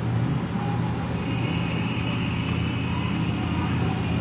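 Steady low hum with a hiss over it, unchanging through a pause in the speech, typical of the background noise of an old recording.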